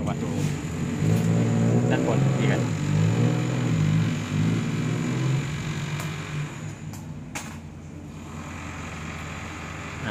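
A motor vehicle engine running with a steady low hum, fading out after about six seconds.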